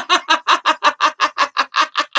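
A woman laughing hard: a long run of quick, high-pitched 'ha-ha' pulses, about seven a second, that grow weaker and trail off near the end.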